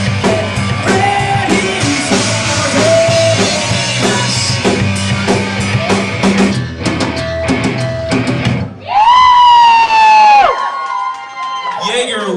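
Live pop-rock band playing with electric guitar and drum kit, then dropping to a few separate drum hits. Near the end a loud held high note swells in, sags a little and dives steeply in pitch, leaving a faint ringing tone.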